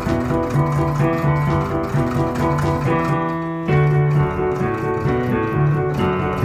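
Piano playing a 1950s rock-and-roll part with both hands: a repeating left-hand bass figure under held chords. The chord changes a little over halfway through.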